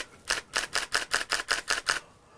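Nikon D7000 DSLR firing a continuous high-speed burst, its shutter and mirror clacking about six times a second, roughly a dozen frames in a row while the shutter button is held down.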